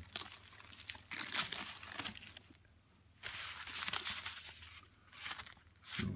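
Clear plastic packaging bag crinkling as it is handled, in irregular bursts with a short lull about two and a half seconds in.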